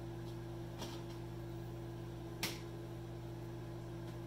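Oster microwave oven running with a steady low hum, heating marshmallow Peeps packed in a plastic bottle. A single sharp click sounds about two and a half seconds in, with fainter ticks around the one-second mark.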